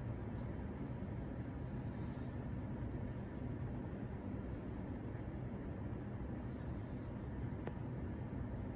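Steady low background hum of room noise, with one faint click near the end.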